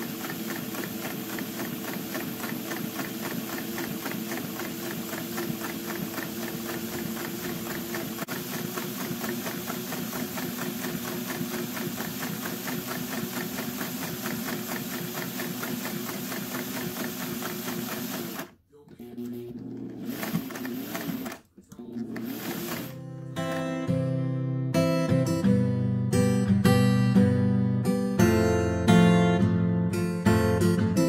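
Vintage Singer 401A sewing machine running steadily through a long seam, then stopping and running in two short bursts. Acoustic guitar music then comes in, louder than the machine.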